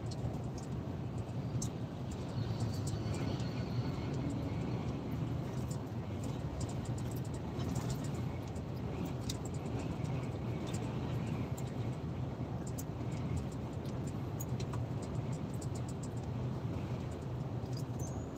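Steady low drone of a lorry's engine and tyre noise heard inside the cab while cruising at motorway speed, with frequent small clicks scattered through it.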